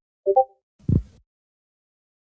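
A short pitched blip, a few tones at once, like a call-app notification, followed about half a second later by a brief low voiced sound on the speaker's microphone.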